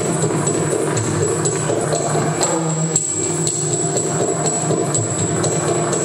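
Yakshagana ensemble music: regular strokes on a maddale barrel drum with jingling bells and cymbals, over a sustained drone.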